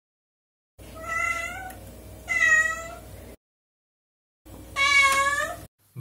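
A domestic cat meowing three times, each meow about a second long: two close together, then a third after a short pause.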